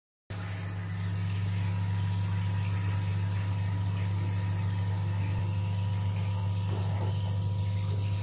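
Steady low electric hum, like a small mains-powered motor running in a bathroom, over a faint hiss of water in a bathtub.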